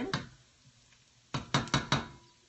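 Kitchenware knocking together: a quick run of four or five sharp knocks about a second and a half in, as a plate of diced apples is brought over a cooking pot.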